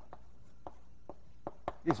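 Chalk tapping and scraping on a blackboard as figures are written: about seven short, sharp taps at uneven intervals.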